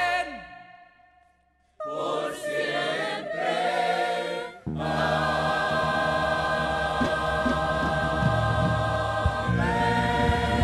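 Soundtrack music fades out, leaving a moment of near silence. About two seconds in, a choir begins singing with instrumental accompaniment, and the music swells to a fuller sound a few seconds later.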